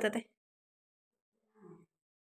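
A woman's spoken word trails off at the start, followed by near silence. There is one faint, brief sound near the end.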